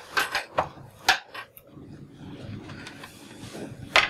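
Light knocks and shuffling of students at wooden tablet-arm chairs as they put down pens and exam papers: a few separate clicks in the first second and a half, then a low rustle of movement, and one more sharp knock at the end.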